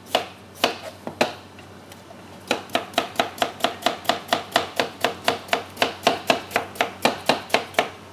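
Chef's knife slicing a peeled potato into thin slices on a plastic cutting board: a few separate cuts, a short pause, then a quick, even run of cuts at about four a second.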